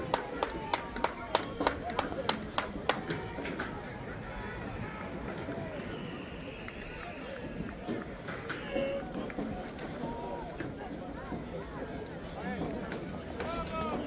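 A rapid run of sharp clicks, about three a second, for the first three and a half seconds, then faint background voices.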